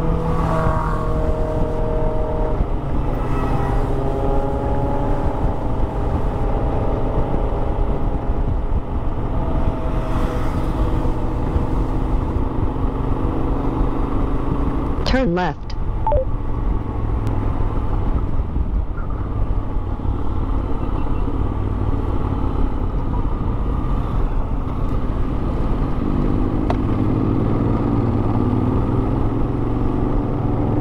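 Honda X-ADV's 745 cc parallel-twin engine running steadily at road speed, with heavy wind noise. The engine note rises and falls slowly with the throttle, and a brief drop in level comes about halfway through.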